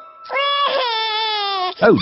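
Cartoon toddler pig crying in fright at his own reflection: one long wail, about a second and a half, sinking slightly in pitch.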